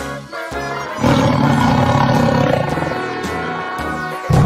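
Background music with a beat, then a loud animal roar sound effect that starts about a second in and lasts almost to the end.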